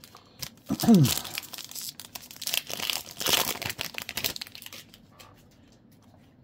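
A Topps Chrome trading-card pack's foil wrapper being crinkled and torn open, a dense crackling that lasts about four seconds. A short falling vocal sound from the man comes about a second in.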